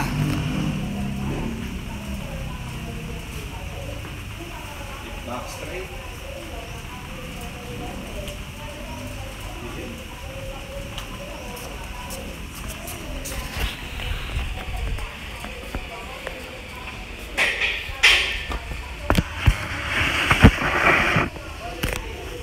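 Gym room sound with faint background music and voices. Near the end, a few sharp knocks.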